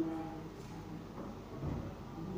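Faint, indistinct voices and room noise in a hall, with a soft low thump near the end.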